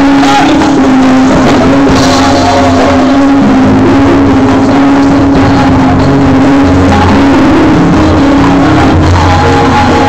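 Live church praise band playing loudly: electric bass, guitar and drums, with a long held tone over the bass line and little or no singing.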